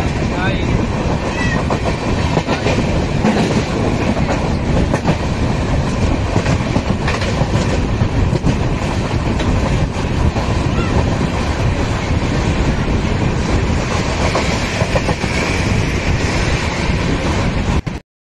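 Running noise of a moving passenger train heard from the doorway of its coach: a steady loud rumble of wheels on the track with irregular clacks over rail joints. It cuts off suddenly at the very end.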